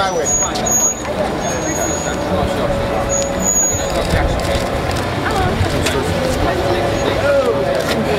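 A car engine running close by, a steady low rumble, with crowd voices over it.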